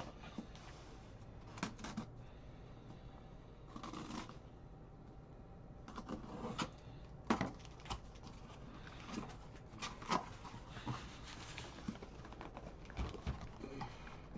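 Hands handling a cardboard box on a tabletop: scattered rustles, taps and light knocks.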